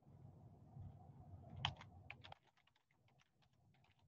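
Computer keyboard typing faintly, a quick run of keystrokes starting about one and a half seconds in, as a web search is typed, heard through a video call's audio.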